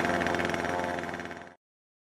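Kanto KT-CS1700 chainsaw's small two-stroke engine idling steadily while its carburettor screws are turned with a screwdriver. The sound fades and cuts off about one and a half seconds in.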